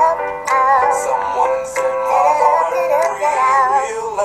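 Music with a sung voice, the held notes wavering with a strong vibrato.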